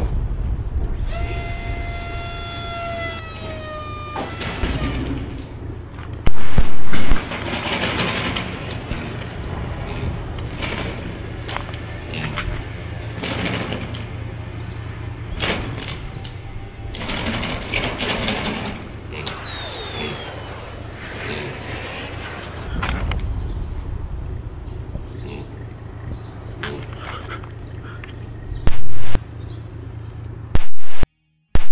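Film soundtrack of music and sound effects: a held high note in the first few seconds, then a busy mix of knocks and falling whistles, with two sudden very loud bursts about six seconds in and near the end.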